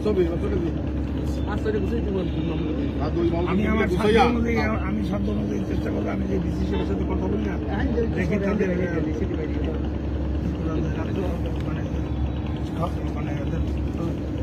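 Men talking in a group, over a steady low hum.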